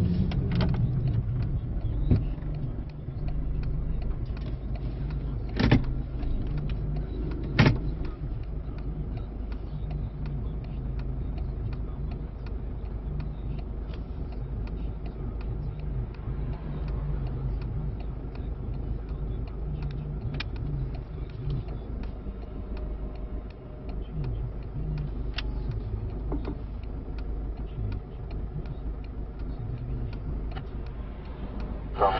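Car cabin noise while driving: a steady low rumble of engine and tyres on the road, with a few sharp knocks in the first eight seconds, the loudest near six and eight seconds in.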